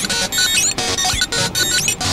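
Dense, clashing electronic music with several tracks sounding at once: short synthesizer tones that start and stop in quick succession, with gliding tones rising and falling over them.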